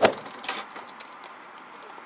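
Clear plastic dome lid and cup of an ice cream sundae being handled: a sharp click at the start, another about half a second in, then a few faint taps over a low steady hush.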